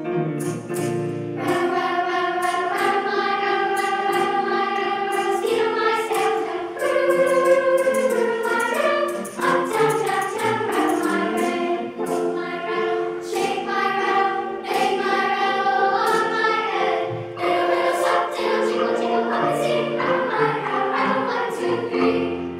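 Large children's choir singing held notes in harmony, accompanied by grand piano.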